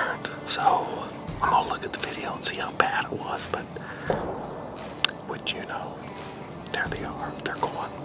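A man whispering close to the microphone, with a few sharp clicks among the words.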